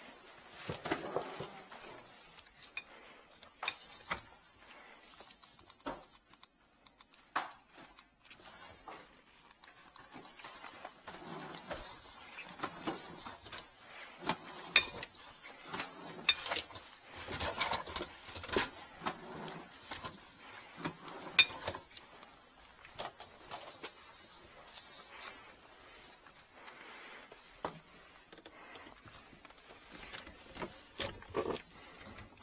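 Irregular clicks, light knocks and rustling from handling a drain inspection camera unit and its coiled push cable.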